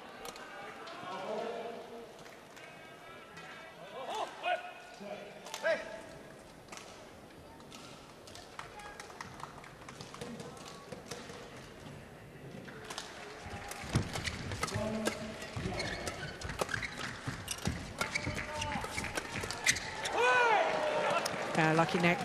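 A badminton doubles rally in an arena: from about halfway through, a quick string of sharp racket strikes on the shuttlecock and footfalls on the court. Before that, crowd voices and shouts.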